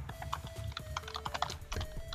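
Computer keyboard keys clicking quietly and irregularly, with a faint held tone underneath.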